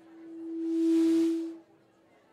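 PA system feedback: a single steady humming tone with hiss that swells over about a second to loud, then cuts off suddenly.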